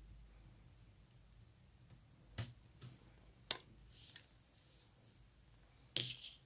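Very quiet, with a few faint clicks and taps from about two to four seconds in, the sharpest at about three and a half seconds: metal-tipped circular knitting needles being handled while stitches are worked.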